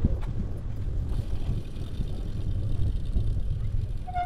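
Wind rushing over the microphone of a camera on a moving bicycle, mixed with the tyres rolling on the path: a steady low rumble with a few faint clicks.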